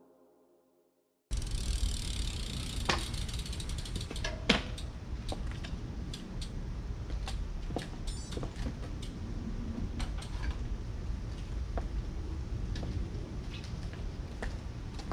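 A road bike being handled: rear freewheel hub ticking, with scattered clicks and one louder knock a few seconds in. There is a steady low rumble underneath. The ticking is dense at first and sparser later.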